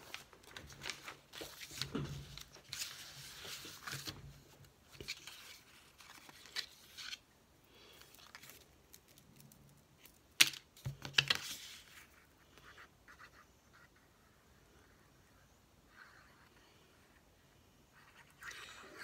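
Paper rustling and crinkling as sheets are handled and laid on a cutting mat, then a sharp click about ten seconds in, followed by a few lighter clicks.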